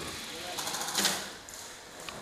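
Airsoft electric gun firing a rapid full-auto burst, a fast even rattle of shots that ends on one louder crack about a second in.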